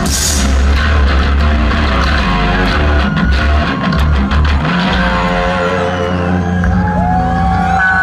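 Live rock band playing loud: an electric guitar solo over bass guitar and drums, with held notes and a note bent upward near the end.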